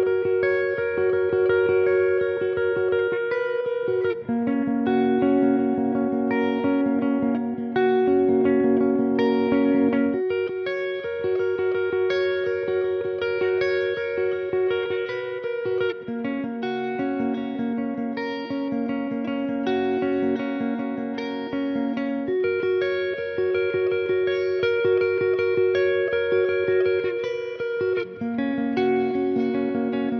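Valiant Jupiter electric guitar playing a repeated phrase of ringing chords and notes on its Bare Knuckle Riff Raff neck humbucker. The pickup is in series mode at first, switches to split-coil single-coil mode about halfway through, and to parallel mode near the end.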